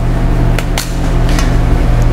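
Metal spoon clinking three times against a stainless steel mixing bowl while a pasta salad is tossed, over a steady low hum.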